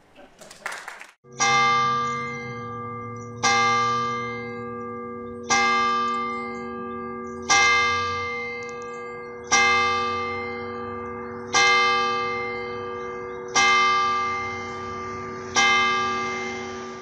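Church tower bell tolling, struck eight times about two seconds apart, each stroke ringing on and fading under the next.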